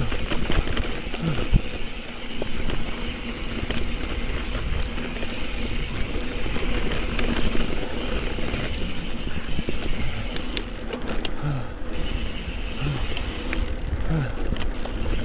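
A Specialized Camber 650b mountain bike on Fast Trak tyres ridden fast down a dirt singletrack, with wind rushing over the camera microphone: a steady rushing noise with scattered rattles and clicks from the bike and trail.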